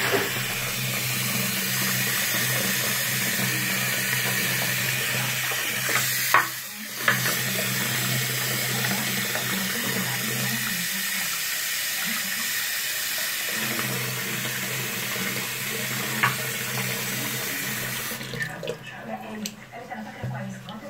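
Tap water running steadily into a ceramic sink and splashing over a wristwatch held under the stream, with a low hum underneath. The rush breaks off briefly about six seconds in, and near the end it falls away into smaller, uneven splashes.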